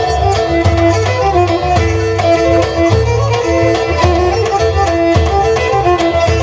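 Pontic lyra (kemenche) playing a folk dance melody over keyboard, with a davul drum beating a steady repeating rhythm.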